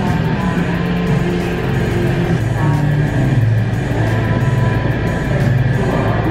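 Background pop dance music with a bass line that steps between held notes and a melody above it.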